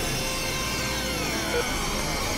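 Dense experimental electronic noise collage of several music tracks layered at once: steady drones and high sustained tones, with a few slow falling pitch glides and a short blip about one and a half seconds in.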